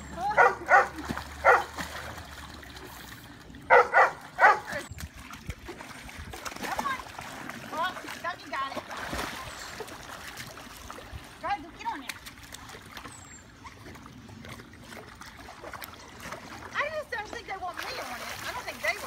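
Yellow Labrador retriever barking in short sharp bursts, three barks near the start and three more about four seconds in, with a few quieter calls later. Pool water splashes as the dog swims and paws at a foam float.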